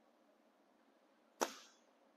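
Near silence broken once by a single short, sharp tap about one and a half seconds in.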